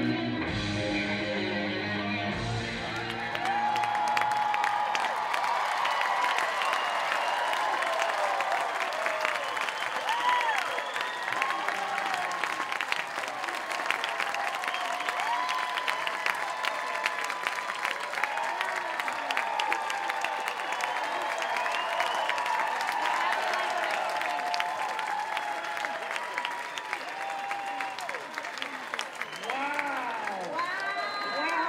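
Dance music ends about two seconds in, and a large theatre audience breaks into steady applause with cheering and whoops that carry on throughout.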